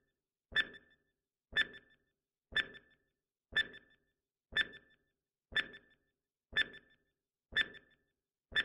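Countdown timer sound effect: a short tick with a brief ring, repeating evenly once a second, eight times.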